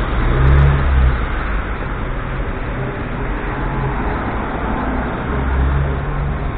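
Street traffic noise: a steady wash of road noise from passing cars, with a low rumble that swells about half a second in and again near the end.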